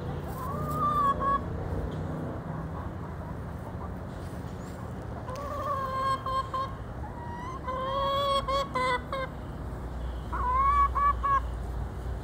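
Backyard hens calling as they forage: four bouts of drawn-out, pitched clucks of a second or so each, about a second in, near the middle and twice toward the end.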